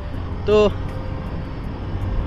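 Motor scooter riding along a highway: a steady low rumble of engine, wind and road noise, with one short spoken word about half a second in.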